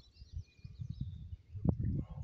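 Quiet outdoor background with a low irregular rumble and faint bird chirps. About 1.7 s in there is a single light knock, from handling the single-shot shotgun as it is brought up to the shoulder.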